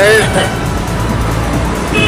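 Street traffic noise: a motor vehicle running close by, a steady rumbling hiss after a brief word of speech at the start.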